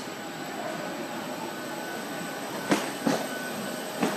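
Aircraft engines running: a steady hum and whine carried into the enclosed jet bridge. Two sharp knocks sound near the end, less than half a second apart.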